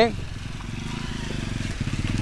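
Motorcycle engine running slowly close by, a steady fast low putter that grows a little louder.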